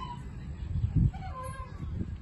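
Playground swing's metal chain hangers squeaking as it swings, a bending squeal that comes twice, once at the start and again past the middle. A low thump about a second in is the loudest moment.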